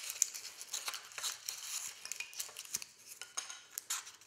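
Pieces of rigid polystyrene foam rubbing, creaking and scraping against each other as a cut heart-shaped pattern is worked free of its block by hand, with a run of small clicks and crackles.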